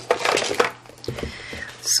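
Stiff scored cardstock rustling and clattering as it is picked up and handled on a craft mat, a burst of short crackles over the first half-second, then quieter handling.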